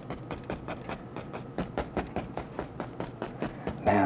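Stiff bristle paintbrush tapping and dabbing oil paint onto a canvas, a quick, even run of soft taps several times a second.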